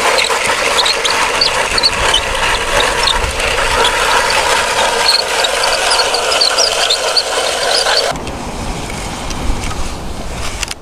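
Plastic toy construction vehicles pushed through wet sand: gritty scraping with a quick run of small clicks and rattles from the plastic parts and tracks. About eight seconds in it drops suddenly to a quieter low rumble.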